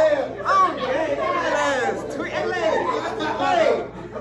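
Several people talking over one another: overlapping crowd chatter in a room.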